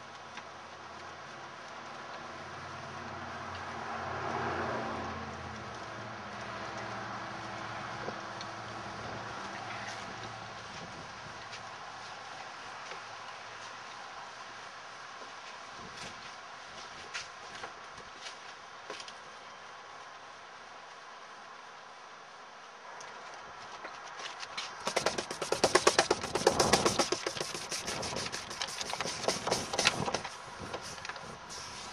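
Steady whirring of a homemade Savonius vertical-axis wind turbine made of 4-inch PVC pipe, spinning in the wind, swelling about four seconds in. Near the end comes a louder stretch of rapid rattling.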